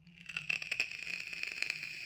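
Plastic packaging crinkling as it is handled, with many small clicks through it, stopping shortly after two seconds.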